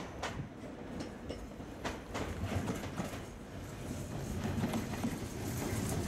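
Nankai 50000-series Rapi:t electric train running slowly past, its wheels clicking irregularly over the rail joints, with a low rumble that grows louder in the second half as it draws near.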